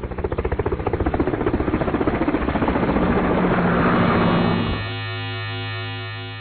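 Mechanical sound effect: a fast, rapid chopping rattle that grows louder for about four seconds, then changes to a steady low hum with a slow regular pulse.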